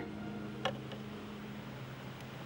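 Faint background ambience with a low steady hum that stops about three-quarters of the way through, and a single short click about two-thirds of a second in.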